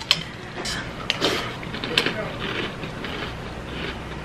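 A metal spoon clinks a few times against a ceramic bowl, and a mouthful of Cheerios cereal with milk is crunched and chewed.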